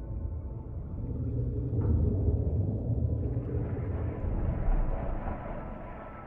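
Deep underwater rumble that swells in the middle, with a hissing wash building over its second half, under a few soft sustained music tones.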